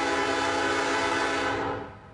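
A train's air horn sounding one long, steady chord of several notes, which fades away near the end.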